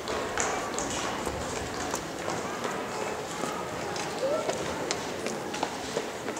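Children's dance shoes clicking on a wooden stage as they walk and run into place, many quick irregular taps, with audience chatter underneath.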